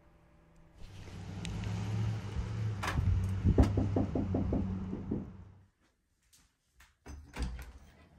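A quick run of about a dozen knocks on a wooden front door, about three seconds in, over a steady low rumble that fades out before the sixth second.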